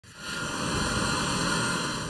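Steady rushing noise of a jet aircraft's engines, fading in at the start, with a faint high steady whine over it.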